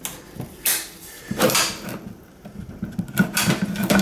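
Metal latches on a wooden observation hive being undone and the wooden top section handled: a few short clicks, knocks and scrapes of wood and metal.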